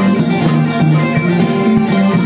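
Mor lam band playing live, a plucked string lead over a steady beat.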